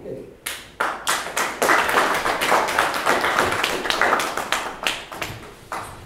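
A small audience applauding: a few scattered claps that build quickly into dense clapping, thinning out near the end.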